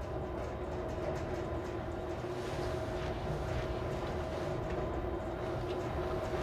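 Elevator car in motion: a steady low rumble with a faint constant hum.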